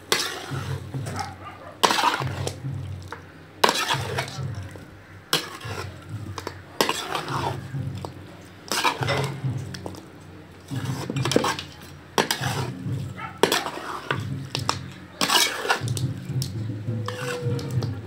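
Metal spatula scraping and clanking against an aluminium wok as chicken is stir-fried, a stroke about every one and a half to two seconds.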